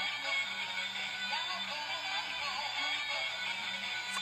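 Singing-fish app in the style of Big Mouth Billy Bass playing a song through a tablet's speaker: a repeating bass line under a wavering, synthetic-sounding voice, thin with no top end.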